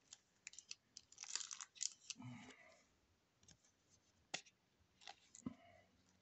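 Faint rustling and a few sharp clicks of trading cards and a plastic card sleeve being handled, as a card is slipped into a sleeve.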